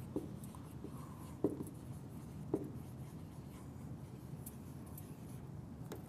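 Dry-erase marker writing on a whiteboard: faint strokes with a few light taps of the tip on the board, the clearest about one and a half and two and a half seconds in.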